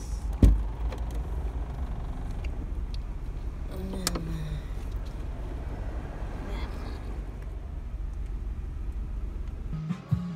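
Car idling, heard inside the cabin as a steady low rumble, with one loud thump about half a second in and a brief voice around four seconds.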